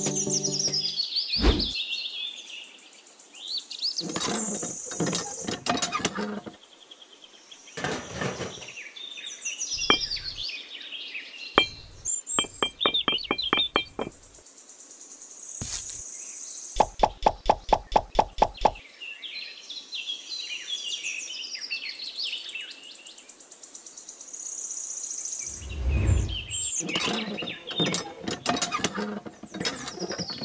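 Birds chirping, with scattered clicks and knocks as small plastic model parts are handled and set in place. Partway through comes a quick run of about a dozen even taps, roughly six a second.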